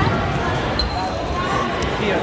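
Low thuds of wrestlers' shoes shuffling on a wrestling mat in a large gym, with faint voices in the background and a short high squeak a little under a second in.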